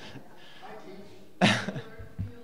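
A single sharp cough about one and a half seconds in, over a faint murmur of voices in the room.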